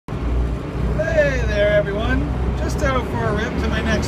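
A man talking over the steady low rumble of a Case 580 backhoe loader's diesel engine as it drives along the road, heard from inside the cab.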